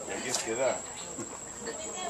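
A steady, high-pitched insect drone, with a short human laugh about a second in.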